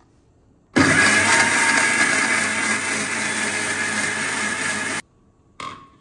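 Electric mixer-grinder (mixie) running in one burst of about four seconds, grinding wet masala to a smooth paste in its steel jar. It starts sharply about a second in and cuts off abruptly.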